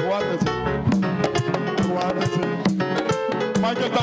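Live band playing upbeat Latin-style music, with guitar and hand percussion (congas, tambora and güira) keeping a steady quick rhythm.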